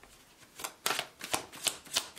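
A tarot deck being shuffled by hand. The cards make a quick run of sharp slaps, about three a second, starting about half a second in.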